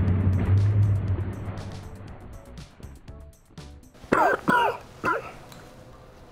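A sudden air blast with a deep low rumble, fading away over about two seconds, then a few short vocal exclamations about four seconds in.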